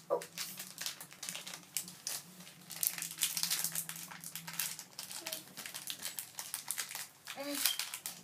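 A crinkly blind-bag wrapper crackling in a child's hands as it is torn open and handled, with many irregular small crackles throughout.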